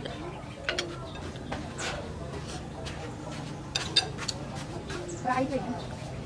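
Eating at a table: a spoon and fork clink against a ceramic bowl, with scattered sharp clicks. A couple of short pitched calls come in the last second.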